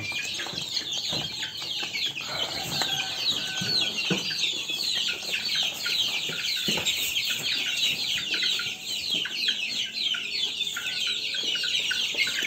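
A flock of young native chickens peeping without pause, many short high-pitched falling chirps overlapping, with a few light knocks in between.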